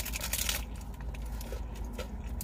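Eating noises: a paper food wrapper crinkling and a crispy taco shell crunching as it is bitten and chewed, loudest in the first half second, then scattered small crackles. A steady low rumble sits underneath.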